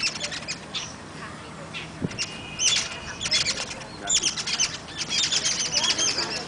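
Small birds chirping in quick, repeated high chirps, thickening into a busy chatter in the second half, with a brief steady whistled note a couple of seconds in.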